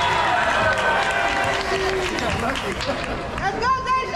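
Many voices of players and spectators calling and chattering together in a reverberant school gymnasium, with no single speaker standing out, and a loud drawn-out shout near the end.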